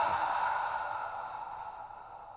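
A man's long, audible exhalation, fading steadily away. It is the long out-breath of cyclic sighing, a double inhale followed by a long exhale, used to release muscle tension.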